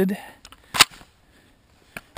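A single sharp metallic click from a Robinson Armament XCR-M rifle as its release and folding stock are worked after a malfunction, then a fainter click near the end.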